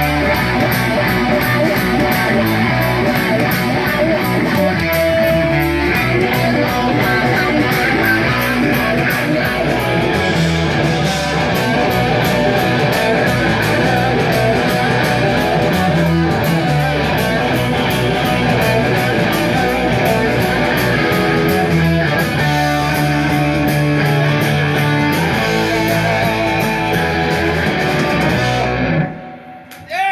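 Live rock band playing loud: two electric guitars over drums, with cymbals keeping an even beat. The song stops abruptly near the end.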